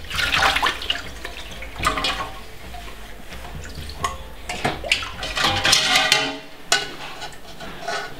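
Water splashing and sloshing in a metal basin as a steel bowl is worked in it by hand. It comes in several surges, the longest a little before the middle to about three quarters through, with music underneath.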